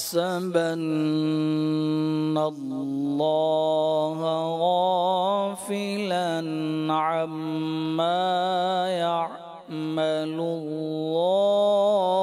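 A man's solo, unaccompanied voice reciting the Quran in Arabic in the melodic tajweed style, holding long notes with ornamented turns. There is a short pause for breath about nine and a half seconds in.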